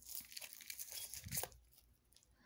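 A deck of tarot cards being handled and shuffled: stiff card stock rustling and sliding against itself, with a few light clicks, for about a second and a half before it dies down.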